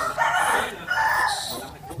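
A rooster crowing: two drawn-out notes.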